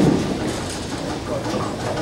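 Bowling alley din: a steady rumble of bowling balls rolling on wooden lanes and through the ball returns, together with the clatter of pinsetter machinery setting a fresh rack of pins.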